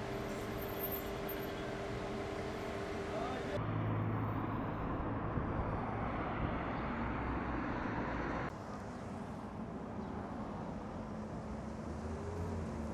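Outdoor city street ambience with vehicle engine and traffic sound and indistinct voices. The background changes abruptly twice, about three and a half and eight and a half seconds in.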